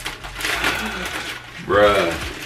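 A man laughing and breathing out hard in excitement, then a loud voiced exclamation near the end.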